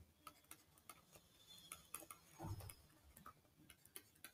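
Near silence broken by faint, irregular light clicks and taps of a stylus writing on a tablet, with one soft low thump about two and a half seconds in.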